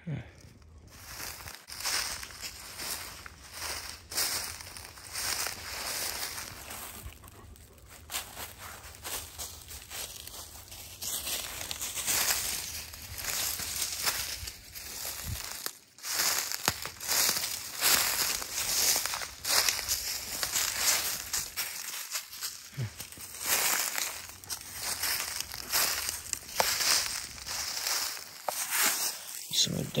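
Footsteps crunching and rustling through dry fallen leaves as someone walks steadily through the woods, pausing briefly about halfway through.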